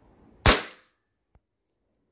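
A single shot from a KJ Works CZ P-09 gas blowback airsoft pistol running on gas: one sharp crack about half a second in, with a fairly soft report, followed by a faint click. It is a chronograph test shot that reads about 314 fps.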